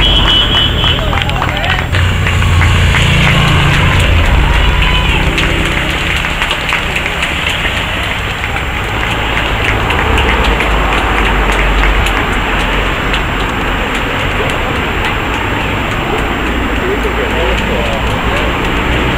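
Race support cars driving past close by with their engines running, over a steady din of roadside spectators' voices.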